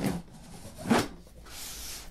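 Knife slicing through the seam of a cardboard box: a short sharp scrape about a second in, then a longer hissing cut near the end.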